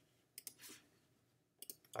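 A few faint computer mouse clicks: a pair about half a second in and a couple more just before speech begins at the end, with near silence between.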